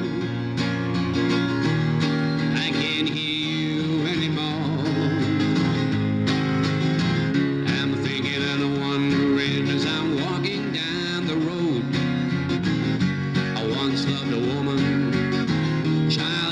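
Martin steel-string acoustic guitar strummed steadily in an instrumental passage between sung verses of a folk song.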